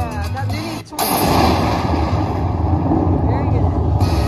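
Slot machine sound effects: its tune stops just under a second in, then a sudden loud crash sets in and rumbles on as a noisy roar.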